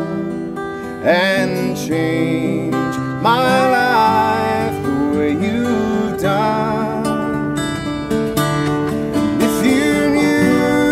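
Live acoustic guitar strumming chords under a violin melody that slides and wavers in pitch: an instrumental break between verses.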